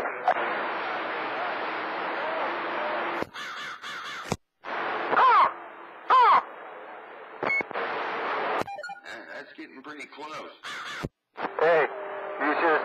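CB radio receiving skip: about three seconds of static hiss from an open carrier, then a choppy, fading signal. About five and six seconds in come two short, loud swooping calls, sound effects played over the air from a noise box.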